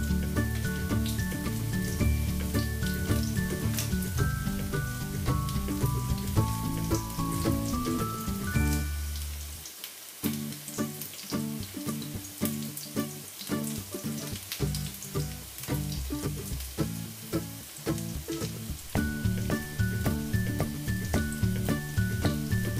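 Potato-and-bread cutlets sizzling as they shallow-fry in oil in a pan, under louder background music with a stepping melody. The music thins to a sparse beat for about five seconds in the middle.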